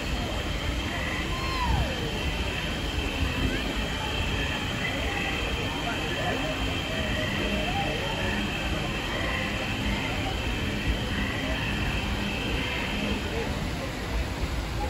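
Busy street ambience: a steady low rumble of traffic under the voices of a crowd talking around.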